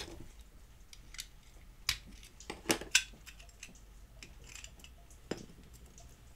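A handful of light clicks and taps as a small diecast toy car is taken apart by hand, its metal body, metal bottom plate and plastic parts knocking together, the loudest between two and three seconds in.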